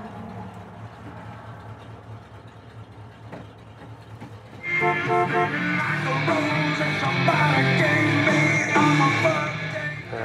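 Low steady hum of the idling engine for the first half, then about halfway in rock music with guitar comes on loudly through the car's dash AM/FM radio as it is tuned to a station.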